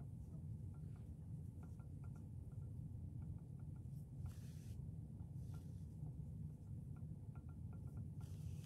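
Faint handling sounds of sewing crochet pieces together with yarn: scattered light ticks, and a couple of brief soft swishes about halfway through as the yarn is drawn through the stitches, over a steady low hum.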